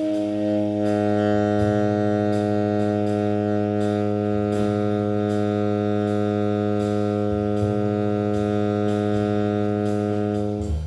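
Tenor saxophone holding a single low long tone, steady in pitch, over a bass and swing-drum play-along with regular cymbal strokes. The held note sounds as the flat seventh against the bass root at this point.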